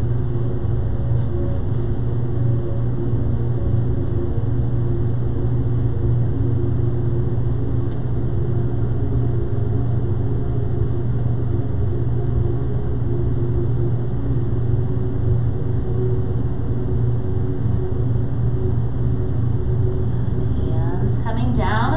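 A steady low hum with faint sustained tones above it, holding level and unchanging throughout.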